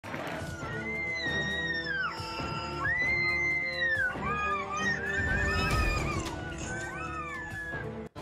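Several people screaming and wailing in panic, long high cries that rise and fall and overlap, as a bus slides off the edge of a road toward a drop. A low rumble comes in about halfway through.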